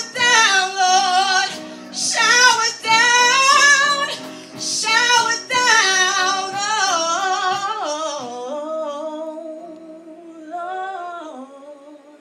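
A woman singing a worship song into a microphone with strong vibrato, over sustained instrumental chords. Her singing turns softer after about eight seconds.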